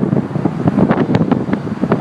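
Strong, gusty wind blowing across the microphone: a loud, uneven low rumble with a few sharp clicks about a second in.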